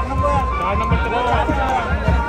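Many voices of a crowd talking and calling out at once, over music with a low, pulsing drumbeat.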